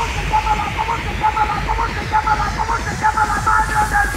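Electronic dance music in a breakdown. A quick pattern of short, high synth notes plays over light rhythmic ticks, with the heavy bass dropped out.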